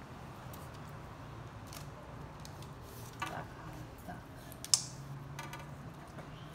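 Scattered light clicks and clinks of small hard items being handled and set down on a baking tray beside a metal bowl, with one sharper click a little before five seconds in, over a faint steady hum.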